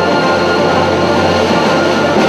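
Chamber string orchestra playing a loud, sustained passage of held chords.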